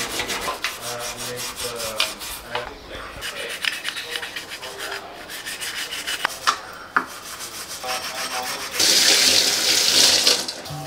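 A stiff brush scrubbing a stainless-steel gas stove top around a burner in rapid, repeated strokes. Near the end comes a louder rush of running, splashing water.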